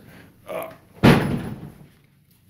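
A single loud slam-like thud about a second in, dying away over most of a second.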